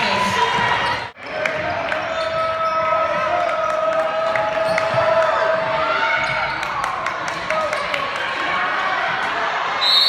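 Basketball game sound in a gym: a ball bouncing on the hardwood court under the voices and shouts of players and spectators. A brief dropout about a second in.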